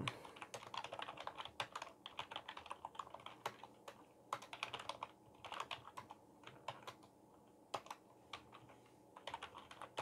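Quiet typing on a computer keyboard: a run of irregular keystrokes, thinning out briefly about two-thirds of the way through.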